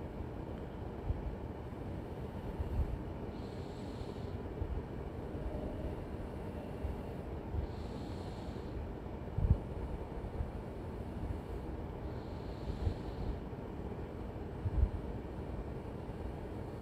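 A person breathing close to the microphone: a soft hiss about every four seconds over a steady low rumble, with a few low thumps.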